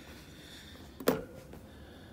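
A single sharp knock about a second in, over a quiet steady room background.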